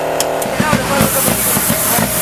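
A rally car's new turbocharged engine idling steadily with the bonnet open. About half a second in this gives way to voices over a louder hiss.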